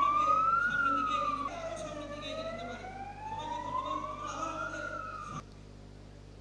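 A wailing siren, its pitch rising and falling in slow, overlapping sweeps, loudest at first and cutting off suddenly about five seconds in.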